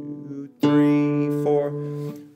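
Nylon-string classical guitar played fingerstyle, practising extreme dynamics: a soft note at first, then about half a second in a much louder note rings out, with another plucked about a second later.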